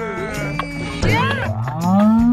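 Background music with a steady beat and added comic cartoon sound effects: quick squeaky pitch glides about a second in, then a low drawn-out call that rises in pitch near the end.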